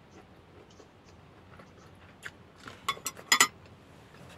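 Chopsticks clicking against a ceramic bowl and plate as they are put down: a few sharp clinks in the second half, the loudest near the end.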